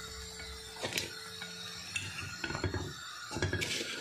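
A metal utensil clinking and scraping against a frying pan as fried pies are lifted out, in scattered clicks and knocks, with a steady hum through the first two seconds.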